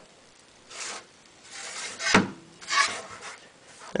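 A hand rubbing and pressing along the edge of a PET-taped glass build plate, heard as several short scraping rubs. About two seconds in comes one sharp crack, the sound of an ABS print's bond to the PET tape letting go.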